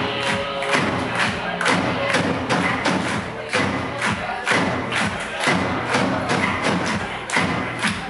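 A live rock band playing a song at full volume, driven by a steady, heavy kick-drum beat at about two beats a second, recorded from among the audience.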